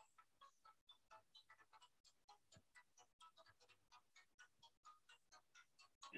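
Near silence, with faint, evenly spaced ticks about four times a second.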